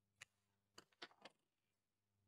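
Near silence broken by a few faint clicks and snips over about a second: small scissors cutting the ends of a cotton yarn drawstring.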